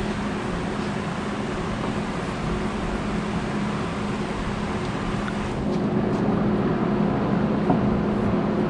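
Steady machine hum, a constant low drone under an even rushing noise, like a running fan or ventilation unit.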